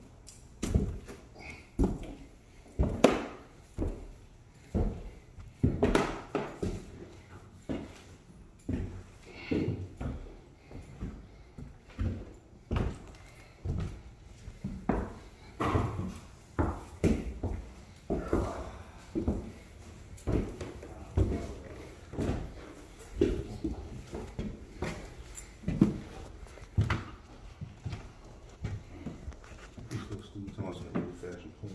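Footsteps on hard floors and stairs, an even walking pace of a step about every three-quarters of a second.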